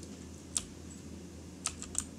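Sparse clicks at a computer: one about half a second in and three quick ones near the end, over a low steady electrical hum.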